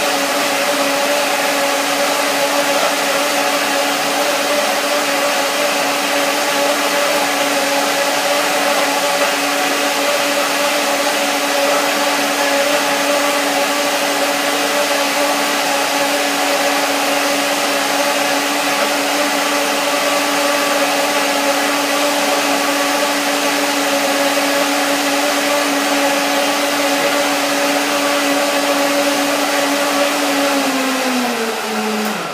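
Countertop blender running steadily, blending young coconut meat and coconut water with bananas and turmeric into a thick milk: a loud, even motor whir with a steady hum.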